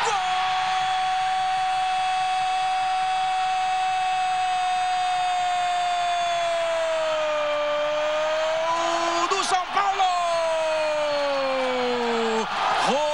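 Football commentator's drawn-out goal cry, one long held "gol" for about nine seconds that sags slightly in pitch, then a brief break and a second held cry falling in pitch: the call of a penalty just scored.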